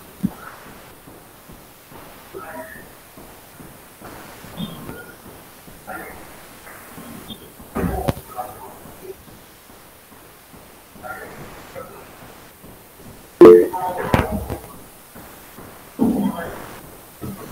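Faint, indistinct talk coming over a video-conference call, in scattered fragments. About thirteen and a half seconds in there is a sudden thump, followed by a second of louder talk.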